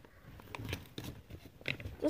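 Faint, scattered clicks and light rustling of small plastic Lego minifigure pieces and their packet being handled.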